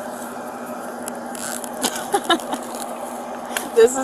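Rustling and scattered clicks of belongings being rummaged through in a fabric duffel bag, over a steady hum, with brief snatches of voice about two seconds in and near the end.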